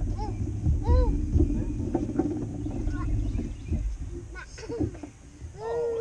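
A small child's short, high-pitched wordless vocal sounds, a couple near the start and a longer rising-and-falling one near the end, over a steady low rumble.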